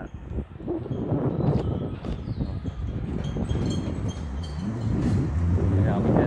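Riding noise from an electric bike: wind rumbling on the microphone, with tyre and road noise as the bike rolls along.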